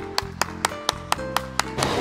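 One person clapping, about four claps a second, over background music with held notes.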